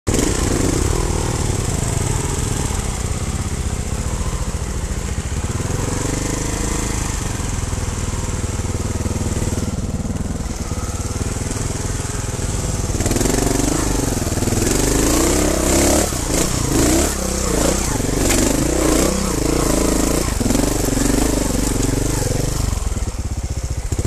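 Trials motorcycle engine running at low revs, getting louder about halfway through, with the revs rising and falling again and again.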